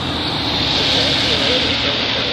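Loud, steady rushing of storm wind and rain as a severe thunderstorm arrives, swelling slightly partway through.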